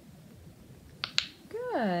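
Two sharp clicks about a fifth of a second apart as a small plastic scent vial is knocked over by a rat, followed by a woman's voice saying a drawn-out, falling "Good" as praise.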